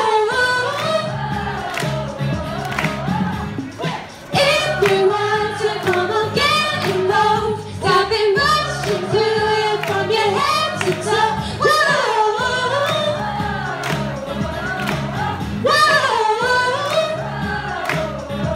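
A woman singing a pop song live into a microphone over a backing track, both amplified through a small portable speaker, with a brief pause in the vocal about four seconds in.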